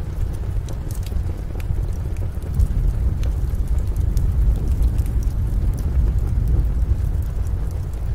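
Steady, loud low rumble with scattered sharp crackles and clicks over it.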